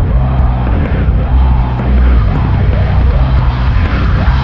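Heavy metalcore music played loud: distorted guitars and bass holding low chords over drums.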